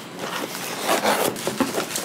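Close rustling and scuffing handling noise, with a few light knocks, as hoodie fabric moves against the phone's microphone.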